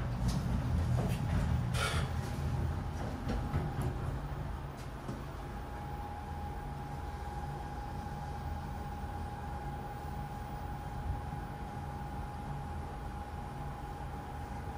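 A TK Elevator META-R passenger elevator car travelling down: a steady low hum with a few sharp knocks in the first two seconds. About five seconds in, a thin steady whine sets in and holds as the car runs.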